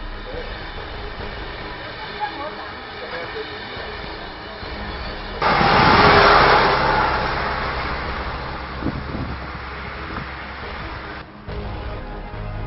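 Vehicle noise: a sudden loud rush about five and a half seconds in that fades away over several seconds, over a steady music bed.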